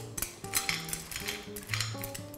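Steamed cockle shells clicking and clattering onto a plate as they are tipped from a wire skimmer, a few separate clinks over background music with held notes.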